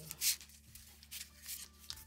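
Paper and plastic rustling as a sticker book is handled: one short, sharp rustle about a quarter-second in, then a few lighter rubs and rustles.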